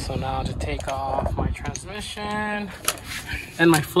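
Quiet talking, with a brief loud knock or clatter near the end.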